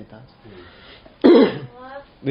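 A man coughs once, sharply and loudly, about a second and a quarter in, against quiet talk.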